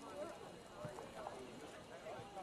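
Faint, scattered shouts and calls of players and spectators at an outdoor soccer game, with a soft thump a little under a second in.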